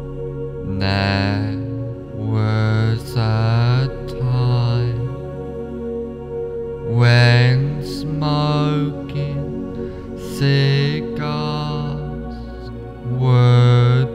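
Meditation music: a low voice chanting in short, gliding wordless phrases over a steady drone.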